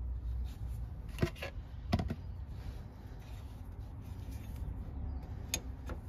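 A few short metallic clicks and knocks from a hex bar tool being worked in the transmission drain plug of an air-cooled VW Beetle, three of them spread out, about a second in, at two seconds and near the end, over a low steady rumble.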